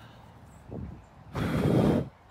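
A person blowing a strong puff of breath at a dandelion seed head held close to the microphone, heard as a rush of wind noise on the mic about a second and a half in, after a fainter short puff.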